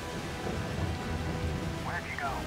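Heavy rain falling steadily as a film sound effect, with a low rumble underneath. Near the end a single short blaster shot sounds, its pitch arching up and down.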